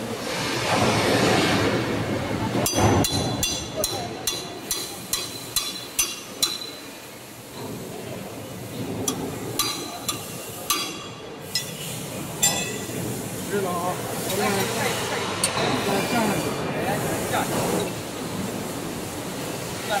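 Steel tools and parts clinking against the rollers and shaft of a roll forming machine as its rollers and spacers are loosened and refitted: a quick run of about ten sharp metallic clinks, then a few scattered ones, over steady workshop noise.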